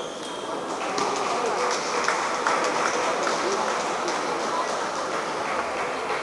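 Table tennis balls clicking off paddles and tables in quick, irregular light knocks, over a steady murmur of voices in a large echoing hall.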